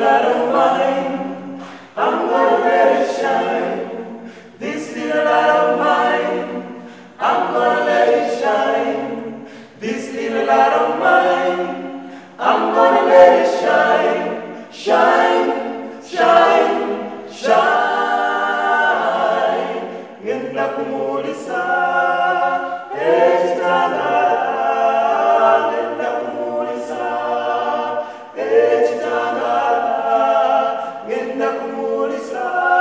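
Five-voice a cappella gospel group, four men and a woman, singing in harmony without instruments, in short rhythmic phrases.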